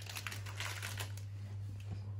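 Soft rustling and crinkling as a miniature dachshund grabs and mouths a plush hedgehog toy, busiest in the first second and quieter after, over a steady low hum.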